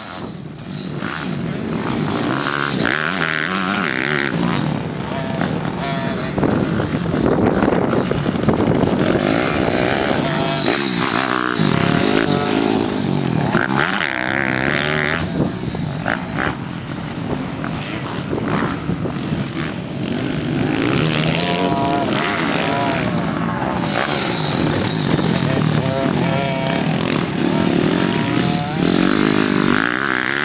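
Bucci F15 motocross bike's engine ridden hard, revving up and backing off again and again, its pitch rising and falling with each throttle change.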